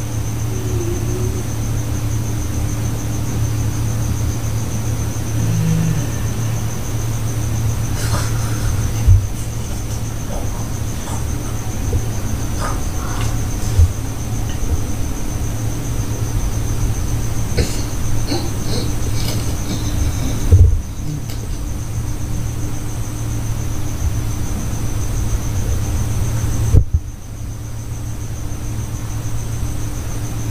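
Crickets trilling steadily over a loud, steady low rumble, with a few soft knocks.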